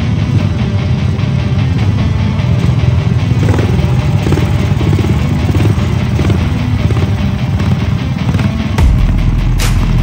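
Off-road race kart engines running in a staging lane, with a fast, even pulse, under background rock music. About 9 s in, a deep boom sets in.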